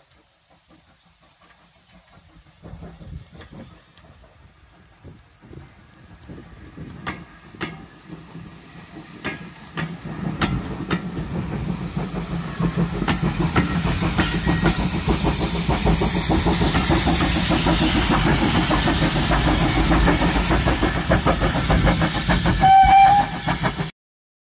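Steam-hauled heritage train passing close by: wheels clicking over the rail joints as the coaches roll past, then the train grows loud and stays loud through the second half. A brief high tone sounds near the end.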